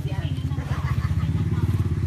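A small engine running steadily with a fast, even pulse.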